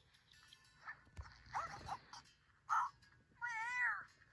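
Cartoon soundtrack heard from a screen's speaker: a character's high, whining cries, a few short ones and then a longer wavering one near the end.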